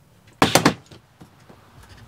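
A brief clatter of about three quick knocks, about half a second in, from a campervan window frame being handled and pressed into its opening, followed by a few faint clicks.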